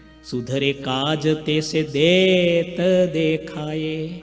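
A man singing a devotional line in a slow, chant-like melody, starting just after a brief pause, with long held notes that waver in pitch around the middle.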